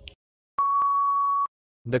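Quiz countdown timer sound effect ending: the tail of a last tick, then a single steady electronic beep lasting about a second that marks the end of the countdown.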